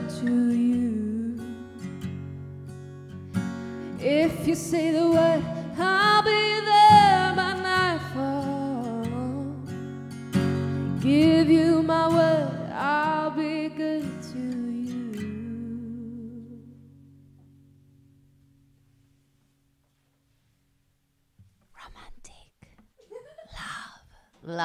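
A woman singing over acoustic guitar, the closing phrases of a song; voice and guitar ring out and fade to silence about two-thirds of the way through. A few spoken words come in near the end.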